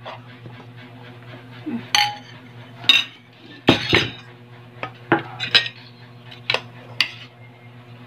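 Eating utensils clinking and scraping against a plate, a string of about nine separate sharp clinks, over a steady low hum.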